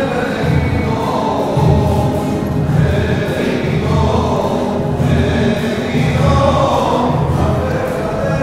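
A choir singing a church hymn with musical accompaniment.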